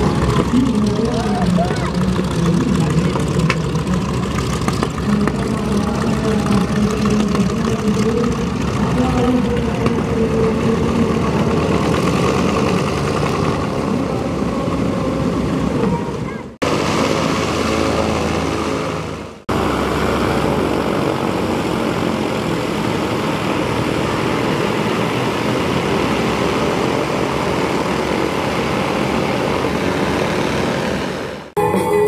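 Twin radial piston engines of a North American B-25 Mitchell bomber running as it taxis, propellers turning, with voices in the background. The sound cuts off abruptly about halfway through and again a few seconds later.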